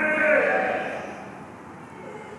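A man's amplified voice ends a drawn-out word at the start, and its echo dies away through a PA in a large hall over about a second, leaving a faint steady background.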